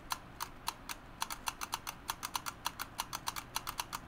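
Battery-powered Disney Doorables Snow White figure's blinking-eye mechanism clicking: a rapid, slightly uneven run of light clicks, several a second.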